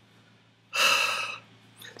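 A man's short, breathy laugh: one voiceless rush of breath about a second in.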